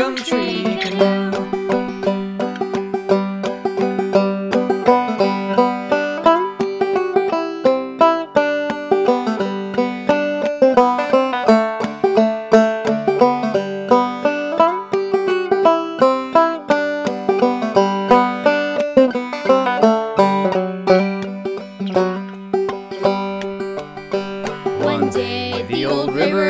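Five-string open-back banjo played clawhammer style: a steady instrumental run of picked melody notes, with one high note ringing again and again throughout.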